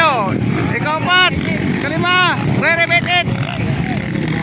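Motocross dirt bike engines revving in repeated surges that rise and fall in pitch as the riders work the throttle on the track, over a steady low rumble of engines.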